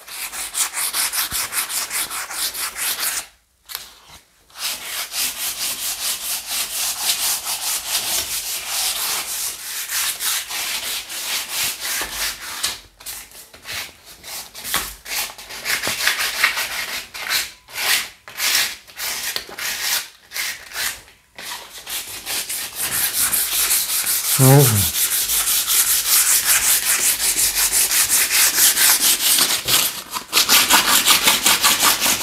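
Wooden door frame being sanded by hand with sandpaper in quick back-and-forth strokes, with a few short pauses; the frame is being prepared for painting. A brief falling squeak about two-thirds of the way through.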